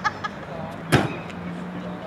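A car door slams shut once about a second in, sharp and loud, over a steady low hum and faint voices.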